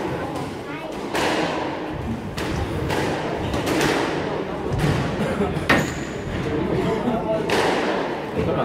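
Squash ball being hit by racquets and smacking off the court walls in a rally: a string of sharp impacts about a second apart, one especially loud a little past the middle.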